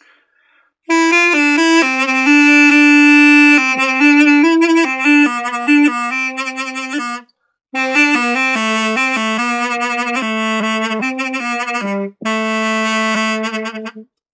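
An A-keyed mey, the Turkish double-reed wind instrument, playing a folk-tune melody phrase, the reprise section, in short stepwise notes with a reedy, buzzy tone. It starts about a second in, breaks for a breath about seven seconds in, and pauses briefly again near twelve seconds.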